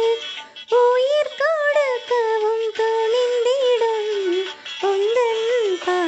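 Karaoke backing track of a Tamil Catholic offertory hymn: an electronic lead carries the sung melody in one ornamented, pitch-bending line over soft accompaniment. The melody breaks off briefly just after the start and dips again near the middle.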